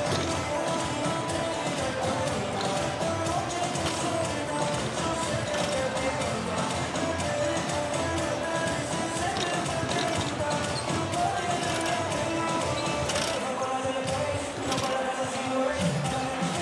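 Arena PA music playing over a murmur of crowd voices, with basketballs bouncing on the hardwood court during halftime warm-up shooting.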